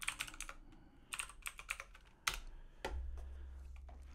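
Typing on a computer keyboard: two quick bursts of keystrokes, then a single harder key press a little after two seconds. A low steady hum comes in near the end.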